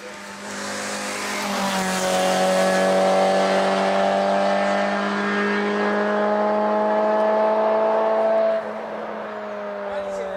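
A race car's engine at high revs under full throttle passing by and pulling away up the hill, with one step down in pitch early on like a gear change, then a steady loud note. About eight and a half seconds in the sound drops off sharply.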